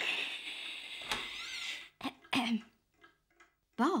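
A man's long, breathy sigh lasting about two seconds, followed by a short murmur.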